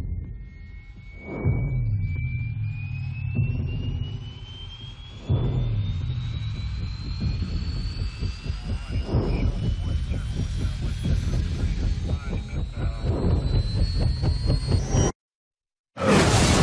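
Film-trailer sound design: a long, slowly rising whine over deep booming hits about every four seconds, with the fast chop of helicopter rotors building up and getting louder. Everything cuts off abruptly about a second before the end.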